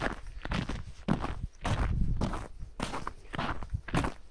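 Footsteps on frozen snow and ice, about two steps a second.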